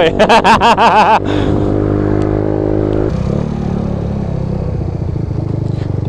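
GY6 scooter engine running steadily, then dropping to a lower, even note about three seconds in as the scooter slows and settles toward idle. A wordless, wavering vocal sound comes over it in the first second.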